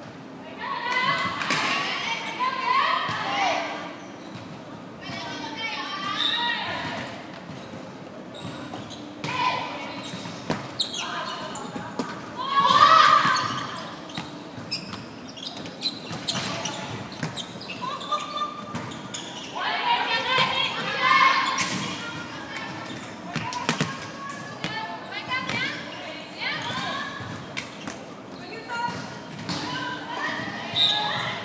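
Volleyball play in a reverberant sports hall: players' voices calling and shouting in several bursts, with sharp thuds of the ball being struck and hitting the wooden floor scattered throughout.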